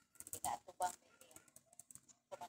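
Computer keyboard typing: a quick, irregular run of key clicks.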